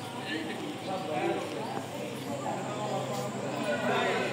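Indistinct voices of several people talking in the background, over a steady low hum.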